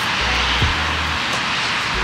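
Background music: sustained low bass notes that change in steps over a steady wash, with a soft kick-like thud about every second and a half.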